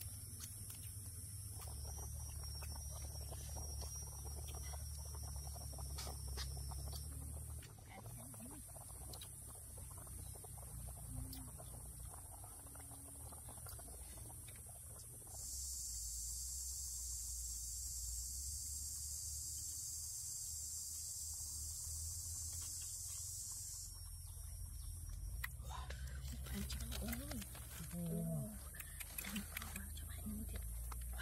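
Forest insects buzzing in a steady high-pitched drone, with a louder insect chorus swelling in about halfway through for some eight seconds and then dropping away, over a low steady rumble. Near the end come crackling and scraping clicks as hands pry open the spiny husk of a durian.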